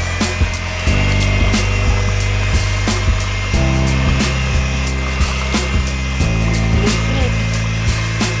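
Electric hand mixer running, its motor giving a steady high whine as the beaters churn pumpkin pie filling in a plastic bowl. The whine sits under louder background music with chords that change every few seconds.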